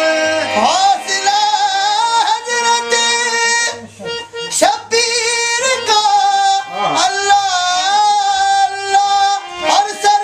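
Qawwali singing: a male lead voice sings long held, wavering notes over a harmonium accompaniment, with a brief break about four seconds in.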